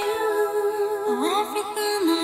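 A woman humming a wordless held note that slides to a new pitch about a second in, over soft live band backing.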